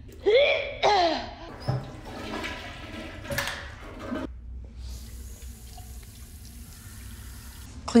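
Brief voice sounds, then a toilet flushing from about four and a half seconds in: a rushing of water that lasts about three seconds and stops just before the next words.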